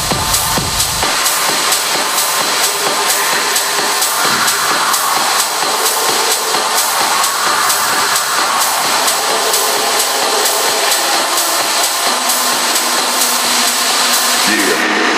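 Dark techno with a steady beat, about two hits a second. About a second in, the kick drum and bass drop out into a breakdown, leaving the high percussion and a hissy mid-range texture.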